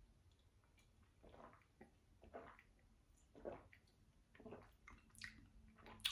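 Faint swallowing sounds of a person drinking a cold carbonated soft drink from a glass: about half a dozen soft gulps spread over a few seconds.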